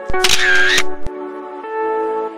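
Camera shutter sound effect: a click, a short burst of noise, then a second click about a second in. Instrumental background music with held notes plays under it.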